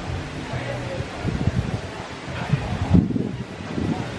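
A man chewing a bite of crisp quesadilla, with a few soft, low thumps of chewing and a faint low hum, over light outdoor breeze.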